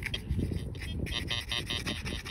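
TX-850 metal detector giving its target tone as a quick run of rapid electronic beeps. The signal comes not from the clasp already dug up but from scrap still in the hole, pieces of rebar that read like gold at 90.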